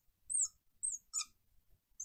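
Marker squeaking on a glass lightboard while writing: a few short, high-pitched squeaks, each a fraction of a second long.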